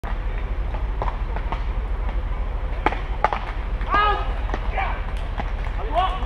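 Beach tennis paddles striking the ball: two sharp hits in quick succession about three seconds in, then a voice calls out briefly. A steady low rumble sits underneath throughout.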